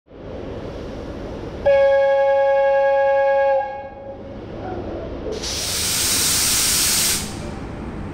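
VL10 electric locomotive horn sounding one loud, steady note for about two seconds, starting a little under two seconds in. About five seconds in, a hiss of released air from the train's pneumatic system follows for about two seconds.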